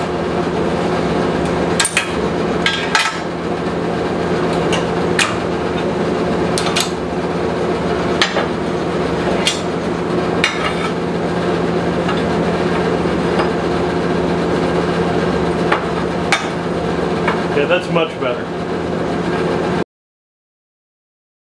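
Steel locking C-clamps clicking and clanking against a heavy steel angle and a steel welding table as they are worked open and shut, a dozen or so irregular sharp knocks, over a steady machine hum.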